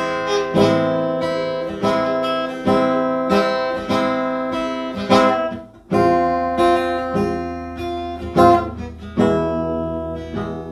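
Acoustic guitar strummed, each chord ringing out and decaying before the next strum, under a second apart, with a brief drop about six seconds in before the playing resumes. The chords belong to the Ethiopian Anchi Hoye pentatonic mode.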